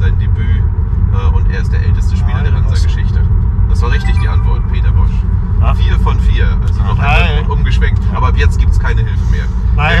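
Steady low rumble of road and engine noise inside a moving car's cabin, with men talking and murmuring over it.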